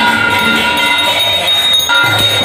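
Bells and small metal hand cymbals ringing and jingling continuously over devotional music, a dense layer of sustained metallic tones.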